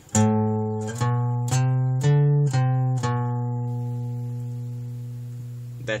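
Acoustic guitar playing a short single-note phrase on the low E string: six picked notes about half a second apart climb to a peak and step back down, and the last note is left ringing and slowly fading.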